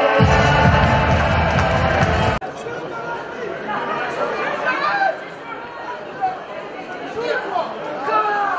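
Music with a heavy bass, cut off abruptly about two and a half seconds in. Then the quieter open-air sound of a football match in play, with players shouting to each other across the pitch.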